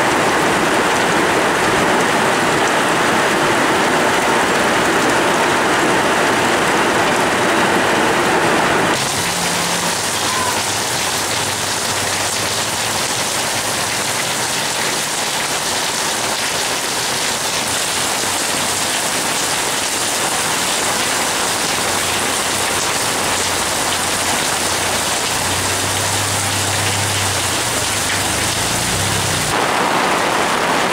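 Heavy rain pouring steadily, at first onto corrugated metal roofs. After a cut about nine seconds in, it is slightly quieter and falls on a wet paved street.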